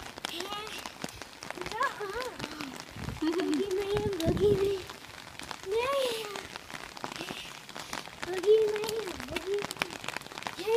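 Rain falling on pavement, heard as a steady hiss dotted with many small drop ticks. Over it a young girl's high voice sings a wordless, sliding tune in several drawn-out phrases.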